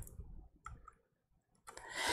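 A few faint, sharp clicks in a quiet pause, then a short intake of breath near the end.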